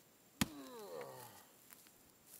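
A single hatchet blow into rotten wood, a sharp chop about half a second in, followed by a falling, drawn-out pitched sound.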